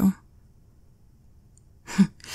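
A woman's voice trails off at the end of a spoken question, followed by a pause of faint room tone. Near the end she lets out a short, breathy sigh.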